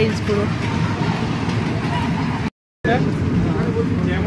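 Indistinct voices of people talking at a distance over a steady outdoor rumble. The sound cuts out completely for a moment about two and a half seconds in.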